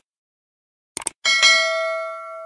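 Subscribe-animation sound effects: a quick mouse click about a second in, followed at once by a bright notification bell ding that rings on and slowly fades.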